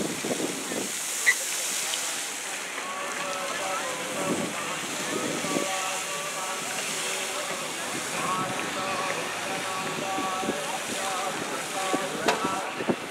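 Indistinct voices of people talking, with no clear words, over a steady hiss of wind and spraying water jets.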